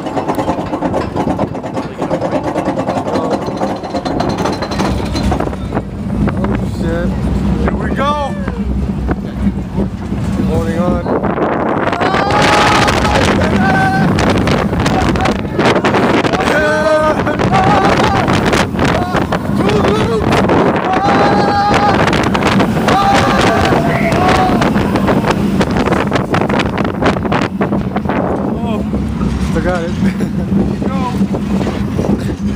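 Riders screaming and yelling on a steel roller coaster, the Demon, over the train's running rumble and rushing wind on the microphone. The screams are thickest through the middle of the ride.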